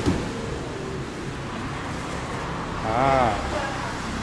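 Steady low rumble of background road traffic, with a sharp click just at the start and a brief voiced exclamation about three seconds in.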